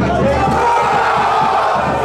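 Football supporters shouting and cheering together in a sustained yell that swells about half a second in, celebrating a goal.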